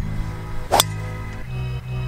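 A driver striking a golf ball off a tee: one sharp crack about three quarters of a second in, over steady background music.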